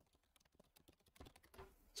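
Faint typing on a computer keyboard: a run of soft, irregular key clicks, a little stronger just past the middle.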